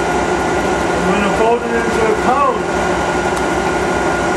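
Steady mechanical drone of a running alternator rig: a car alternator, modified with its diodes removed to give three-phase AC, spinning, with a fast low pulsing underneath and a faint steady whine above.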